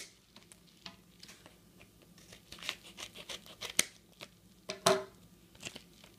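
A padded paper mailer envelope being handled: scattered soft crinkles and small ticks, with two sharper snaps about four and five seconds in.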